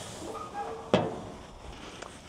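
Burger patties sizzling faintly on a gas grill, with a single sharp knock against the grill about a second in.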